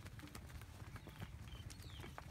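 Faint, irregular footfalls of cattle hooves on a dry dirt track as a small herd walks past.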